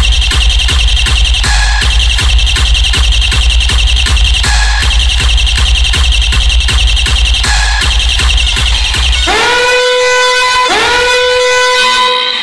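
Loud Indian DJ remix music with heavy bass and a fast, even drum beat. About nine seconds in the bass drops out and a police-horn sample sounds twice, each time swooping up and then holding a steady tone.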